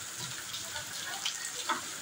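Very heavy rain pouring steadily onto a concrete alley: a continuous hiss with scattered sharper drips and splashes.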